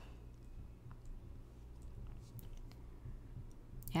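A few faint, scattered clicks over a quiet, steady low hum.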